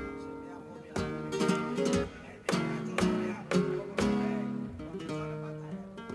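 Flamenco acoustic guitar interlude: a handful of sharply strummed chords, one about a second in and a quick run of them around the middle, with the notes ringing on between strokes.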